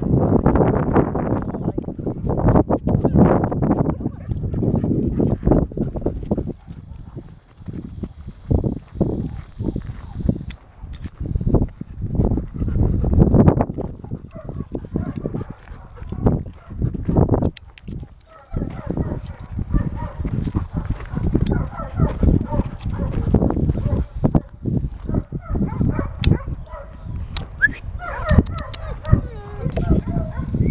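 Footsteps crunching on a gravel track while walking, irregular and continuous, with a few brief pauses.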